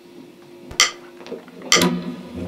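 Metronome clicks set to 130 BPM starting up: two sharp clicks about a second apart, over a faint steady hum.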